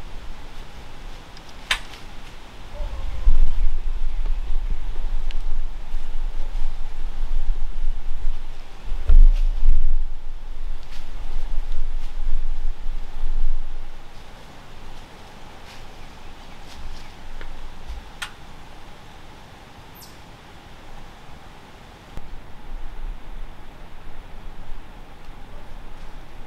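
Low rumbling wind buffeting on the microphone, coming in gusts that are strongest about three and nine seconds in and die down after about fourteen seconds, with a few sharp clicks.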